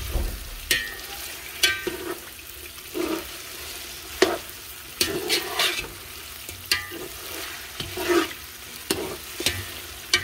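Chicken pieces frying in hot oil with onions and ginger-garlic paste in a pot, a steady sizzle, being browned (bhunai) before the rice goes in. A spoon stirs the pot, scraping and knocking against it about once a second.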